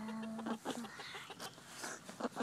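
A Polish hen clucking: one steady drawn-out note at the start, then a run of short clucks.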